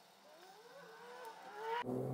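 A faint voice humming or singing with a gliding, rising pitch, growing louder toward the end.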